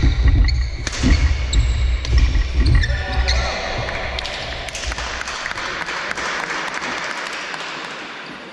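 Doubles badminton rally in a large echoing sports hall: sharp racket hits on the shuttle and players' feet thudding on the wooden court. The rally stops about three seconds in, and noise from the watching crowd follows.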